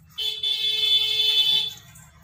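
A single steady high-pitched alarm-like tone, held for about a second and a half, starting just after the beginning and stopping shortly before the end.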